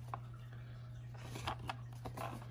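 Faint handling of paper leaflets and packaging: a few light clicks and rustles over a steady low hum.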